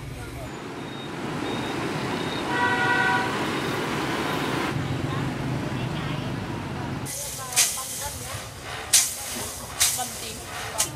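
Street traffic noise with a short vehicle horn toot about two and a half seconds in, the loudest moment. About seven seconds in it gives way to a quieter room sound with a few sharp clicks or taps.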